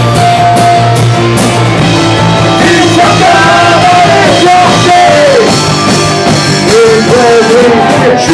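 A live rock band playing loudly: electric guitars, bass and drums, with a singer's voice through the microphone coming in about three seconds in.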